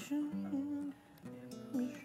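Acoustic guitar played live, with a voice humming a melody over it; the music drops away briefly about halfway through.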